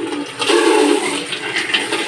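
Pot of fish and pork-bone soup at a rolling boil on the stovetop, the broth bubbling steadily, louder from about half a second in.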